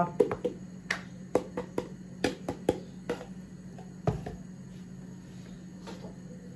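Plastic tubs clicking and tapping against the rim of a plastic mixing bowl as flour is tipped in, a quick run of light taps over the first three seconds, then one louder knock about four seconds in as a tub is set down.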